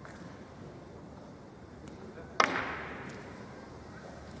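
A cue striking the cue ball in a three-cushion carom shot: one sharp click about two and a half seconds in, with a short ring dying away in the hall.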